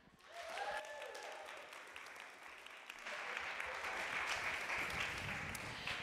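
Audience applauding in welcome, light at first and building from about three seconds in.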